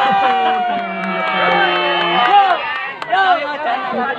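Crowd of spectators shouting and cheering, many voices at once, with one long held shout early on. The voices thin out a little after about three seconds.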